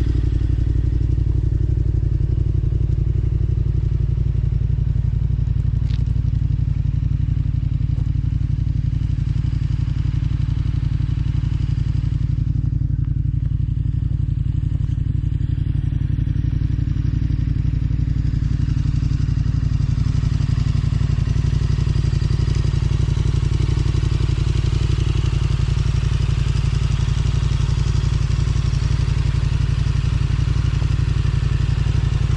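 KTM adventure motorcycle engine idling, a steady unchanging low hum throughout.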